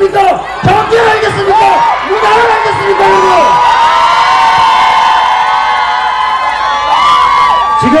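Rally crowd cheering and shouting, many voices at once, swelling to its fullest from about three seconds in until near the end.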